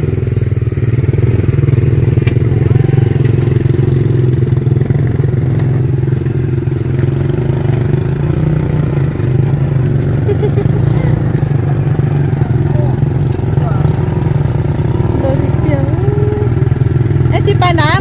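Small underbone motorcycle engine running steadily with a low, continuous drone as the bikes are worked up a steep dirt slope.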